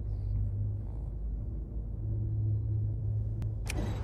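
Steady low hum of a spaceship cockpit's engine drone. Near the end a sharp click, then music cuts in.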